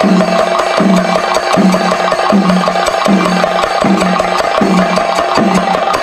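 Rhythmic percussion music: a dense run of rapid, even strokes with a low drum tone returning about every 0.8 seconds.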